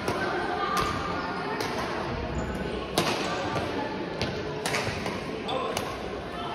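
Badminton racket strings striking a shuttlecock in a fast doubles rally: about six sharp, irregularly spaced hits, the loudest about three seconds in, over murmuring voices.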